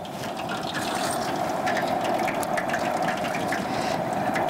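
Hot peanut oil sizzling in an outdoor propane deep fryer: a steady rushing hiss with many small crackles.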